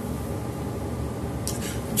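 A pause in speech: steady low room noise from the webcam microphone, with a faint short sound near the end as speech is about to resume.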